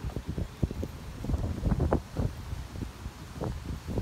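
Wind buffeting a handheld phone's microphone in irregular gusts, a low rumble with uneven louder surges, strongest around the middle.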